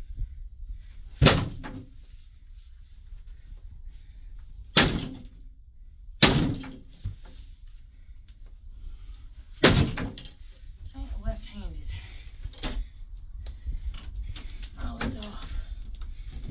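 Sledgehammer blows striking a carpeted bed frame to break it apart: four heavy thuds, each with a short ringing tail, and a lighter knock later.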